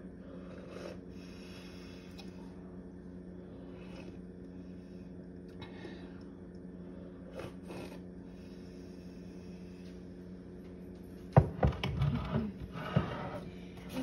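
A steady low hum throughout. About eleven seconds in comes a sharp knock, followed by two seconds of clattering and knocking as things are handled on a kitchen countertop.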